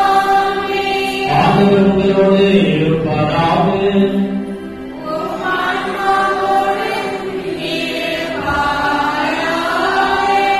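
Sung Catholic liturgical chant, the melody moving in phrases of a few seconds over a steady held accompanying tone.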